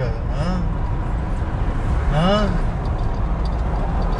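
Car engine and road noise heard from inside the cabin while driving, a steady low rumble.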